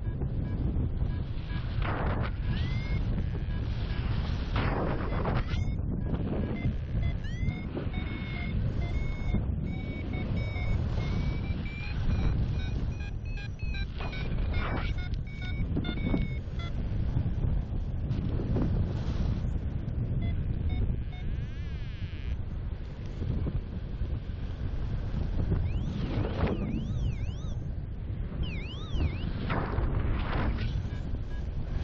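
Airflow rushing over the microphone of a paraglider in flight, surging in gusts. From about 6 to 15 seconds in comes a rapid run of short electronic beeps, and a few rising-and-falling chirps near the end: a flight variometer's climb tone, signalling that the glider is climbing in lift.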